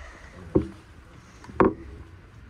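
Two short, sharp knocks inside a commuter train's driver's cab, about a second apart, the second the louder, over a low steady hum.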